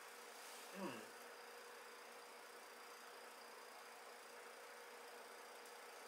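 Near silence: faint room tone with a thin steady hum, and one brief faint sound about a second in.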